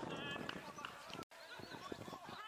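Several voices shouting and calling across an outdoor football pitch, with a couple of short knocks. The sound cuts out abruptly just past a second in.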